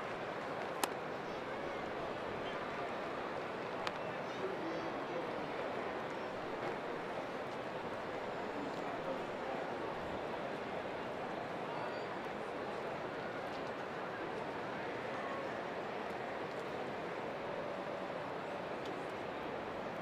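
Steady murmur of a ballpark crowd. Less than a second in there is a single sharp pop as the pitch lands in the catcher's mitt, and a fainter click follows around four seconds in.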